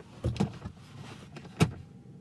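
A few short soft knocks and rustles of movement inside a car cabin, the sharpest about a second and a half in, as a hand settles onto the steering wheel.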